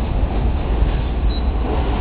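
Tatra T6A2D tram running along its track, heard from inside the car as a steady low rumble of wheels on rails and running gear.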